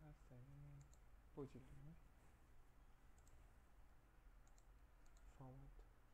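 Faint computer mouse clicks, a few short pairs of clicks scattered through, over a low steady hum.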